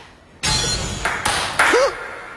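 Table tennis ball struck hard in a rally, as an anime sound effect: a sudden sharp hit with a rush of noise about half a second in, then a second hit a little after one second. A short voiced exclamation follows near the end.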